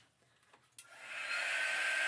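Small handheld craft dryer switched on about a second in, its fan spinning up to a steady whirr with a high whine, blowing on freshly applied chalk paste to dry it.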